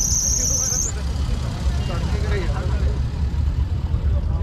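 Outdoor fairground background: a steady low rumble with faint voices in the crowd, and a thin high whine that stops about a second in.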